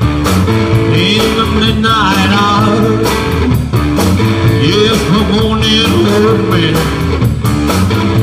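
Live band music: a steady drum beat with bass, an electric Telecaster guitar and a strummed acoustic guitar, between sung lines. It is picked up close to the PA mains, so the electric guitar's own amp is distant.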